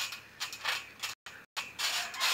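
Trampoline creaking and rubbing under a person's bare feet as he steps and shifts his weight, in uneven bursts a few times a second. The sound cuts out completely twice, briefly, a little past a second in.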